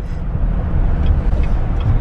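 Steady low rumble of a car's engine and tyres on the road, heard from inside the cabin while it drives.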